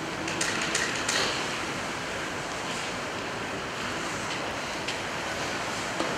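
Steady hiss of room noise in a large hall, with a few faint clicks about a second in.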